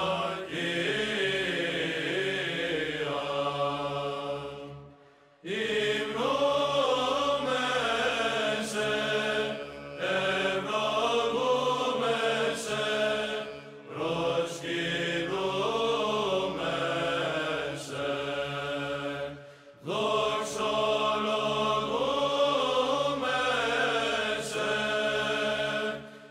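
Chanted vocal music over a held low drone, sung in phrases of about four to five seconds with brief pauses between them.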